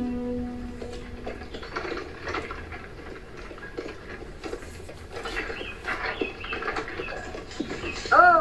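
Horse-drawn wooden cart moving through a forest: scattered hoof thuds, with knocks, rattles and squeaky creaks from the cart. A held note of the film score fades out in the first second or so.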